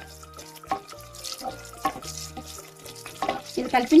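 A spatula stirring in a nonstick kadai, with a few light taps against the pan, as cumin seeds, a bay leaf and green chillies fry lightly in oil. Background music with a bass line plays under it, and a voice comes in near the end.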